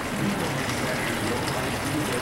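Filtered water running steadily into a one-gallon plastic jug as it fills.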